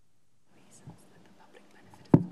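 Faint whispering into a microphone, starting about half a second in, with a soft bump just before the one-second mark.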